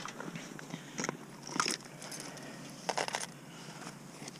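A hand rummaging in a fabric backpack: a few short crinkling, scraping rustles, about a second in, again half a second later, and a cluster of them near three seconds.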